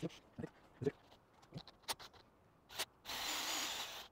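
A few light knocks and clicks of metal being handled and set in place, then, about three seconds in, a cordless drill starts boring into the hardwood leg through a steel drill guide, a steady noisy cutting sound lasting about a second.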